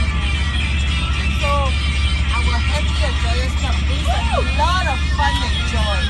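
Music playing inside a moving bus over a steady low engine drone, with passengers' voices calling out in rising and falling cries, most of them in the second half.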